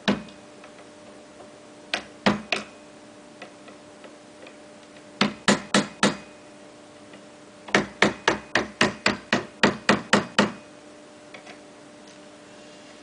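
Hand hammer striking the upturned wheelbarrow's frame in bursts: a couple of blows, then three, then four, then a quick run of about a dozen at roughly five a second.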